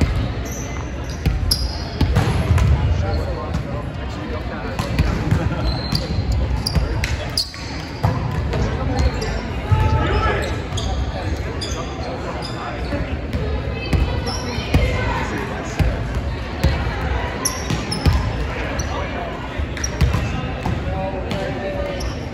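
Volleyballs being hit and bouncing on a hardwood gym floor, sharp smacks scattered irregularly through a volleyball hitting drill, with sneakers squeaking. The sounds echo in a large gym, over a continuous murmur of voices.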